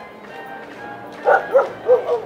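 A dog barking three times in quick succession, starting a little after the middle, over background music.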